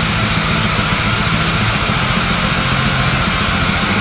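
Raw black metal: heavily distorted guitars in a dense, steady wall of sound over rapid drumming.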